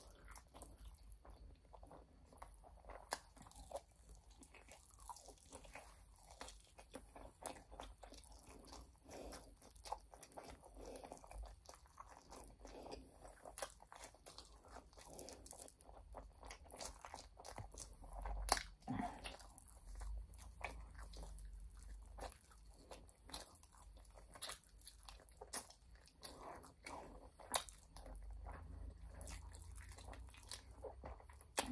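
Faint close-up eating sounds: chewing and biting into sauced chicken wings, with many small sharp crunches and clicks scattered throughout.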